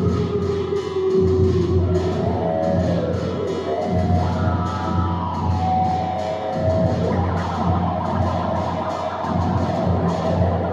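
Electric guitar played through an amplifier in free, abstract improvisation: long held notes that slide slowly up and down in pitch, over a low pulsing backing.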